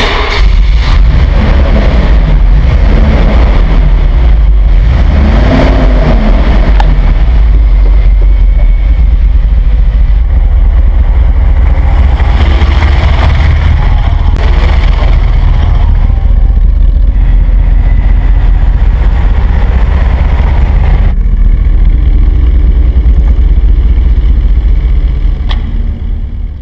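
Mercedes-Benz 450 SL (R107) 4.5-litre V8 running loud, revved up and down a few times in the first several seconds, then held at a steady drone. The sound fades out near the end.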